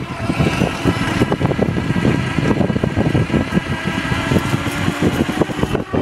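Electric scooter riding along while towing a second scooter, with a continuous rumble and uneven rattling from the wheels and a faint steady motor whine.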